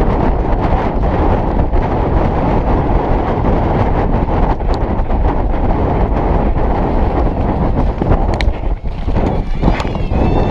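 Racehorse galloping on turf, heard from the saddle through a head-mounted action camera: a loud, steady rush of wind and movement with the hoofbeats beating through it.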